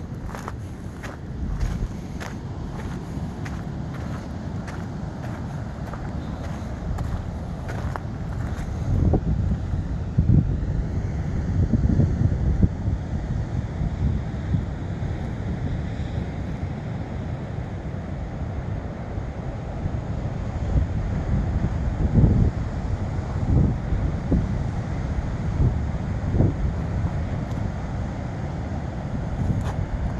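Wind buffeting the microphone in low gusts over the steady wash of breaking ocean surf. Footsteps on the sandy path tick through the first several seconds.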